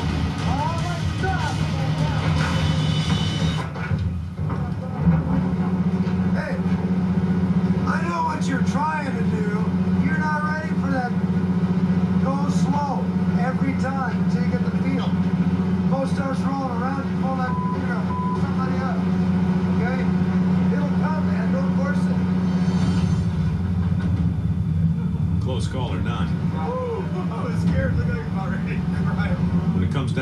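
Steady low drone of a crab boat's engine, with indistinct voices over it.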